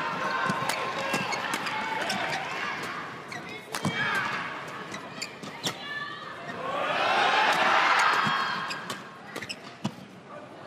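Badminton doubles rally: sharp racket strikes on the shuttlecock and shoe squeaks on the court, under crowd noise in a large hall. The crowd swells loudly about seven seconds in and dies down again before the end.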